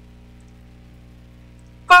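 A steady low hum made of several even, unchanging tones, with no other sound in it.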